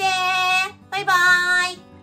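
A woman's high, sing-song voice calling out a cheerful farewell, two drawn-out calls in a row ("Thank you! Bye-bye!" in Mandarin), over faint background music.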